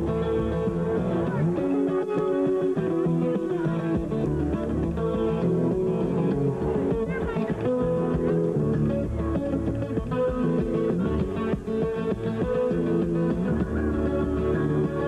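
Amplified steel-string acoustic guitar played solo in an instrumental break, with ringing chords over low bass notes.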